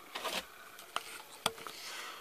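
Small handling sounds of hands and tools on a workbench: a few light knocks and rubs, with one sharp click about one and a half seconds in.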